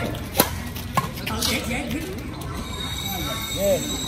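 Two sharp smacks of badminton rackets striking a shuttlecock, about half a second apart within the first second, the first the louder; players' voices call out after them.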